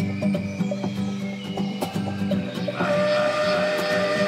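Melodic progressive house music: a steady electronic beat under sustained synth tones and a low bass note. About three-quarters of the way in, a new high, held synth line comes in.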